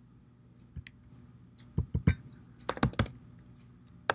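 Typing on a computer keyboard: a single click about a second in, then two quick runs of keystrokes, three and then four, about two and three seconds in.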